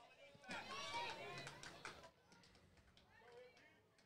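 Faint voices talking in the distance, mostly in the first half; otherwise near silence.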